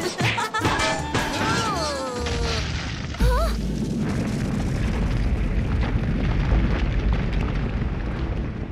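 Cartoon sound effects over background music: a descending whistle glide, then, about three seconds in, a sudden deep rumble of the ground shaking that holds steady to the end.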